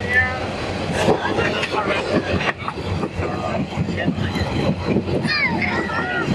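Moving passenger train heard from inside the carriage: the steady running noise of the train with people's voices talking over it.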